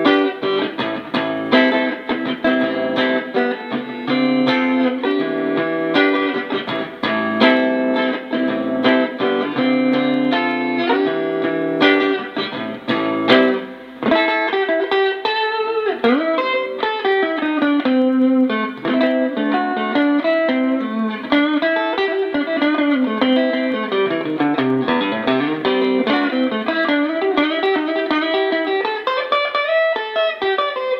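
Xaviere XV-JM offset Jazzmaster-style electric guitar with GFS pickups, played through a Fender Vibro Champ XD amp: rhythmic chords for about the first fourteen seconds, then single-note lines with notes gliding up and down in pitch.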